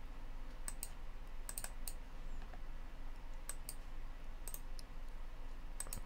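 Computer mouse buttons clicking faintly about ten times, several of them in quick pairs.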